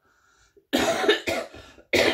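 A woman coughing: a loud run of coughs starting under a second in, and another cough beginning right at the end.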